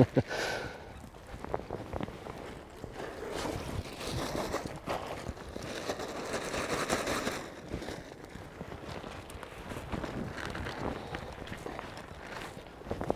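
A plastic weighing bag rustling, with water sloshing as it is dipped into the river to wet it. The noise is loudest between about four and seven seconds in, with small scattered clicks.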